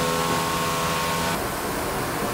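Steady hum of workshop machinery, a stack of even tones that cuts off about one and a half seconds in, leaving a steady hiss.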